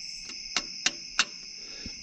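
Three sharp metallic clicks as a wrench levers the spring-loaded idler tensioner pulley, a worn tensioner that sticks and does not spring all the way back. A steady high-pitched drone runs underneath.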